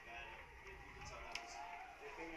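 Faint background voices with no commentary over them, and one sharp click a little over a second in.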